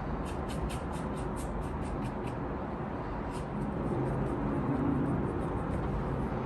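A bristle brush scrubbing thinned dark oil paint onto canvas in quick short strokes, about four a second, which die away after about two seconds. A steady low background rumble runs underneath.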